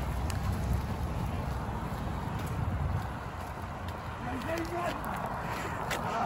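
Roadside walking ambience: a steady low rumble of wind on the microphone and road traffic, with footsteps on the pavement and faint voices about four to five seconds in.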